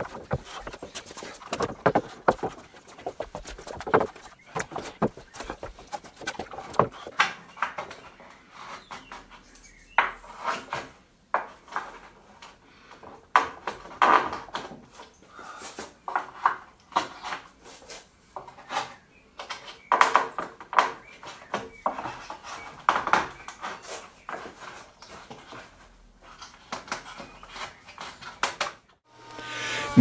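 Oak boards being handled, turned over and laid down on a table: irregular wooden knocks and clatter, some sharp and loud, others faint.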